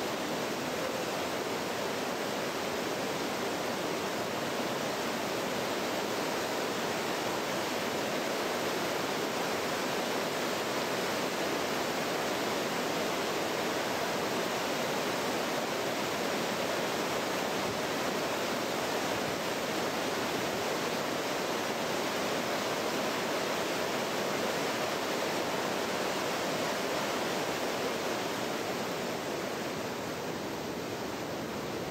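Steady rushing of flowing river water, an even noise that does not change.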